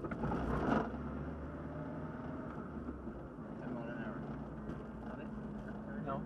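Triumph TR7's engine running steadily under way, a continuous low drone heard inside the car with road and tyre noise. A brief, louder rush of noise comes about half a second in.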